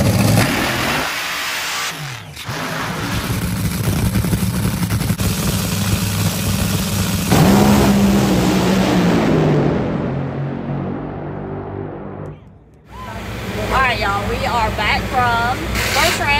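Top Fuel dragsters' supercharged nitromethane V8 engines at full throttle: a loud engine noise for about ten seconds that fades as the cars run away down the track, then cuts off suddenly. A voice is heard near the end.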